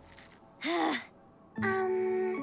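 A short gasp-like vocal sound from a cartoon character about half a second in, its pitch rising and falling. Near the end, steady held music notes begin.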